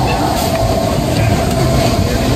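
Matterhorn Bobsleds cars rolling along the steel track, a steady rumble of wheels with a faint whine held under it.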